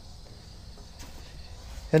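Quiet outdoor background: a low rumble and faint insect chirring, with one faint click about a second in.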